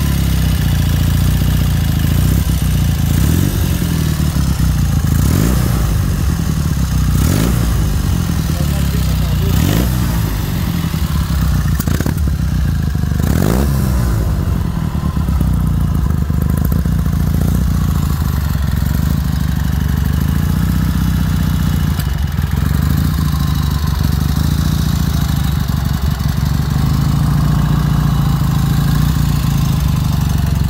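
Horex Imperator 400 motorcycle's parallel-twin four-stroke engine running at idle, blipped up and back down about five times in the first half, then idling steadily.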